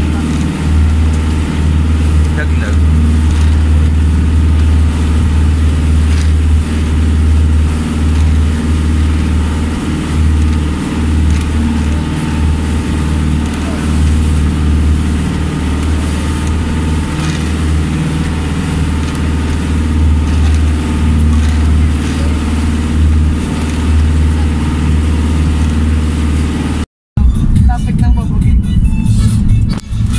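Outrigger bangka boat's engine running steadily at cruising speed, a strong low hum over the rush of water past the hull. Near the end it cuts off abruptly into road noise inside a car.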